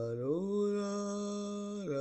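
Wordless vocal singing: one long held note that glides up about half a second in, stays steady, and slides down near the end of the phrase.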